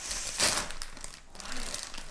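A Flamin' Hot Cheetos snack bag crinkling and rustling as hands pull at its sealed top to open it, loudest about half a second in.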